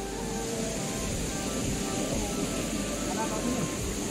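Steady rush of a small mountain stream running over rocks, with faint music over it.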